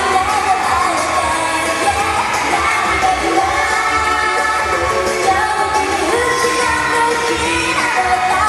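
J-pop idol song performed live: a young woman singing solo over a backing track with a steady beat, recorded from the audience in a concert hall.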